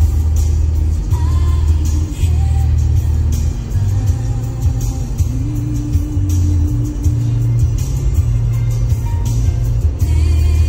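Music with a steady beat, heavy bass and a melody line.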